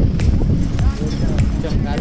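People talking over a heavy, steady low rumble with scattered sharp knocks.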